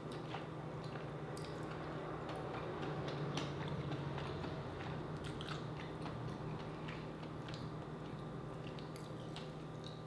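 Close-up chewing and wet mouth sounds of someone eating boiled seafood, with scattered small smacks and clicks over a steady low hum.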